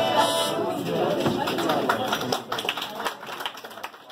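A pub session tune rings out on its last note just after the start, followed by scattered handclaps and chatter from the players and listeners, fading out near the end.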